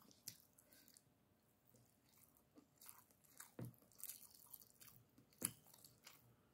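Faint eating sounds close to the microphone: chewing on a mouthful of rice, with scattered small wet clicks. The sharpest click comes about five and a half seconds in.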